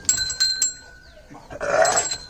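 A ram gives a short, hoarse bleat about one and a half seconds in, while the small bell on its neck rings and clinks.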